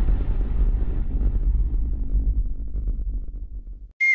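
Deep rumbling tail of a cinematic impact sound effect in a logo intro. It fades slowly and cuts off abruptly just before the end.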